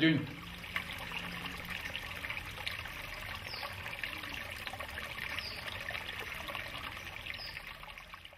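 Shallow stream trickling over leaf litter and sticks, a steady water sound. Three faint, short, high chirps come about two seconds apart.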